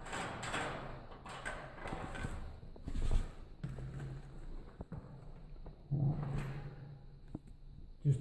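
Scraping, rustling and knocks of a person climbing through a netted shaft onto a metal ladder, with a louder knock about three seconds in.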